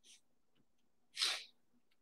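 A man sneezes once, sharply, a little over a second in.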